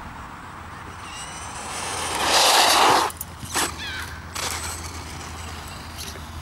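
Rear-wheel-drive Team Durango short course RC truck with a 12-turn brushless motor on 2S LiPo running flat out toward the microphone. Its motor whine rises in pitch and grows louder to a peak about two and a half seconds in, then cuts off suddenly. A few short sounds follow.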